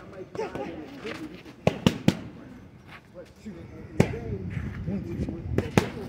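Boxing gloves smacking focus mitts in sharp single hits: three quick punches about two seconds in, one at about four seconds, and two more near the end.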